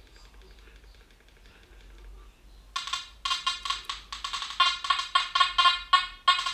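Makro Gold Kruzer metal detector in its FAST program at gain 90 sounding a rapid run of short buzzy tone pulses, about four a second, starting about three seconds in, as a small gold chain is passed over the coil. At this gain the detector is over-excited and chattering, and needs the gain lowered to settle.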